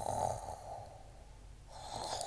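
A person imitating snoring with the voice: a breathy, rasping snore lasting about a second at the start, and a second snore starting near the end.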